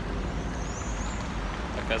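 Steady city street traffic noise from passing cars.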